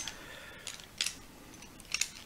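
Wood-cased pencils clicking lightly against each other as a handful is sorted in the hand: a few short clicks, the sharpest about a second in and another near the end.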